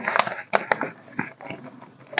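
Paper banknotes and a clear plastic zipper envelope in a cash binder rustling and crinkling as bills are handled, in a run of short crackles that thin out towards the end.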